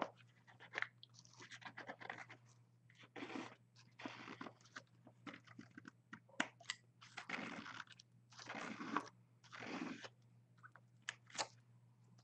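Palette knife scraping modeling paste across a stencil on a canvas, in a series of short, faint strokes.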